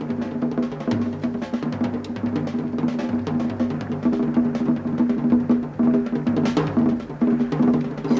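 Fast, steady beating of drums, with a held low musical tone underneath: war drums in a tense music cue.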